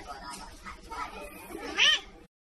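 A woman's voice, low and indistinct, then near the end a short, loud meow-like call from a person imitating a cat, its pitch rising and then falling.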